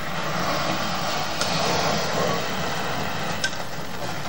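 Burning fuse flaring in flames around the base of a glass flask, a steady rushing hiss, with two sharp cracks, about a second and a half in and again near the end. The fuse is heating the glass so that the flask cracks along the ring into a bowl.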